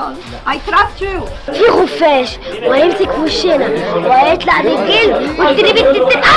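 Several people talking at once, with music underneath.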